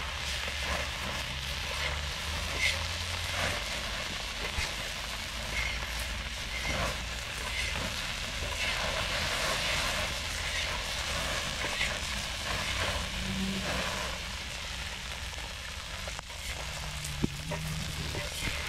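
Shrimp sizzling in a steel pan over an open wood fire, with many small crackles and pops throughout as they are stirred with a wooden spatula.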